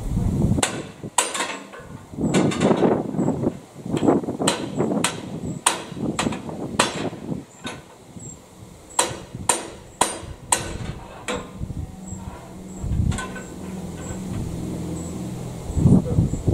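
Hammer blows on the steel of a Krone BiG Pack 4x4 baler's chamber while its repaired ram is being fitted back in. About a dozen sharp metallic strikes come at uneven intervals, some in quick pairs. A steady low drone comes in near the end.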